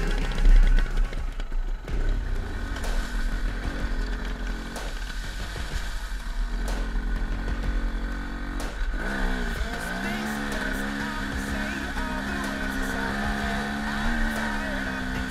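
KTM Freeride 250 dirt bike engine running under way, with a low rumble on the microphone; about nine seconds in the revs climb and then hold steady.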